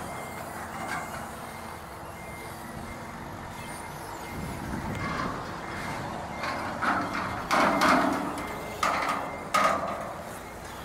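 Forklift reversing alarm beeping repeatedly over its running engine. Several louder bursts of noise come in the second half.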